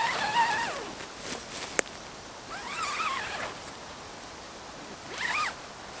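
The zip on the OEX Bobcat 1 tent's outer door being pulled closed in three separate strokes: at the start, about three seconds in and about five seconds in. A single sharp click comes about two seconds in.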